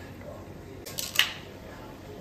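A quick cluster of two or three sharp clicks about a second in, the last the loudest.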